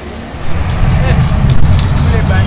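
City bus driving past close by, a heavy low rumble that sets in about half a second in.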